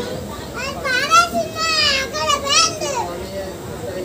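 High-pitched children's voices calling out, from about half a second in until about three seconds in.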